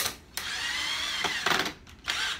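Cordless drill driving a wood screw up through a wooden chair rung into a pine frame. The motor whine rises and then eases off over about a second before stopping.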